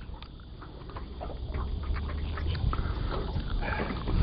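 Water splashing as a hooked flathead thrashes at the surface beside a small aluminium boat, in many short, scattered splashes that grow louder toward the end, over a low rumble of wind on the microphone.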